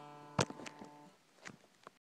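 Guitar strings left ringing and fading out within about a second, with a sharp click about 0.4 s in and a few fainter clicks after, from the phone being handled.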